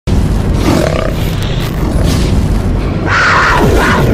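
Cinematic intro sound effect: a loud, rumbling fiery roar with whooshing swells, building to a bright burst with a falling sweep near the end.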